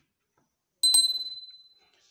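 Notification-bell sound effect of a subscribe-button animation: a sharp click and a single high bell ding that rings out and fades over about a second.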